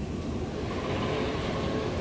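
Motorized curtain track running steadily as the curtains are drawn, a low even motor hum.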